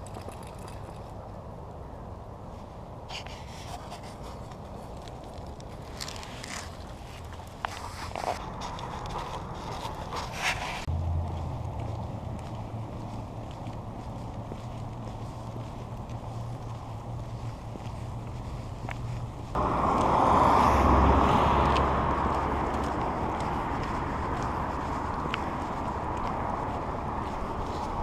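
A person and a golden retriever walking on a leash: footsteps and paws scuffing pavement and rustling dry leaves, with a steady low hum of road traffic. About twenty seconds in, a sudden loud rush of noise starts and slowly eases off.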